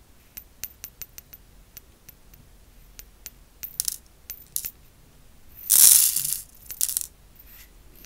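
Pixie crystals, tiny glass rhinestones, are shaken out of a small plastic bottle onto a plastic triangle tray. Scattered light clicks come first, then a louder rattling pour of many crystals about six seconds in, and a short second pour just after.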